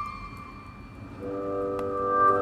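Background music. A held chord fades out, then about a second in a new piece comes in with sustained chords that swell louder.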